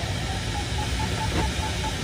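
Steady rush of airflow noise inside a sailplane's cockpit in gliding flight, with faint, short beeps repeating through the second half.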